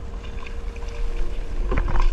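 Water sloshing and wind on an action camera's microphone at the side of an outrigger boat, under a steady hum, with splashing near the end as the diver slips into the sea.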